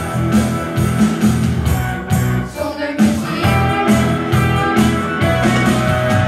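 Live rock-and-roll song played by a small band of strummed electric guitars and a hand drum, with a short break about two and a half seconds in before the beat picks up again.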